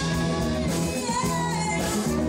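Live band playing: a woman singing lead over electric guitar, keyboard and drum kit.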